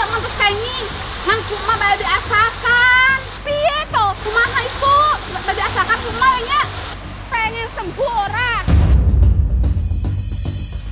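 Steady rush of a waterfall under high-pitched voices, then a loud deep rumble about nine seconds in, after which the higher sounds drop away abruptly.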